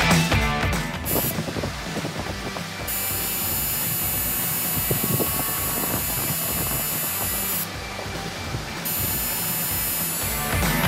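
Background music fades out about a second in, giving way to the steady electric buzz of a coil tattoo machine needling skin; the buzz stops for about a second near 8 s, then starts again.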